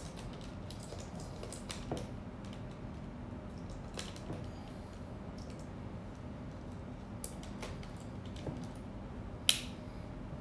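Light plastic clicks and taps from a hot air brush being handled and turned in the hand, with one sharper click near the end. The dryer's fan is not running.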